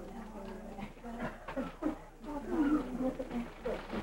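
Indistinct voices of several people talking, too unclear to make out words.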